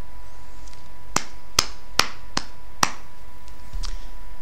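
Five sharp clicks in an even rhythm, about two a second, over a steady faint background hum with a thin constant tone.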